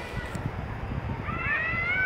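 A dog whining: a few high, arching whines that rise and fall, starting about a second and a half in, over a low rumbling noise.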